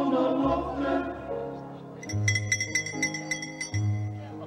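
Band music: sustained chords over a low bass line, with a quick run of repeated high, ringing notes in the second half.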